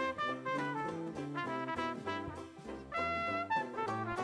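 Instrumental background music with brass instruments, a jazzy tune moving in short, distinct notes.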